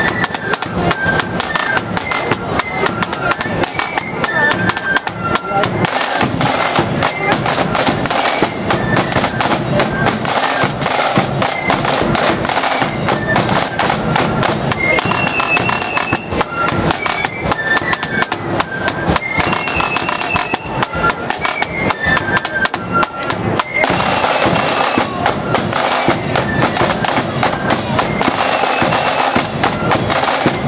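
Marching flute band playing: a line of snare (side) drums beating rapid rolls and rudiments with a bass drum, under short, high flute notes carrying the tune.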